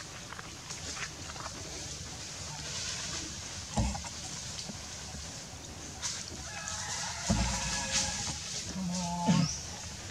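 A steady high insect hum with two short low thumps, about four and seven seconds in, and a couple of pitched animal calls in the second half.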